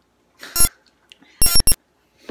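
Electronic beeps in a ringtone-like pattern: one note about half a second in, then three quick notes near the end.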